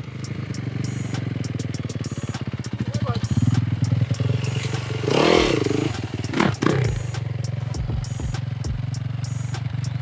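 Dirt bike engine idling steadily, with a sharp throttle blip that rises and falls about halfway through, then a smaller one just after.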